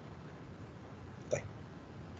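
Faint steady hiss of an online call recording, with one short spoken word about a second and a half in.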